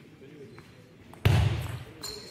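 Quiet hall ambience with a couple of faint clicks of a table tennis ball, then a sudden loud sound about a second and a quarter in that fades over about half a second.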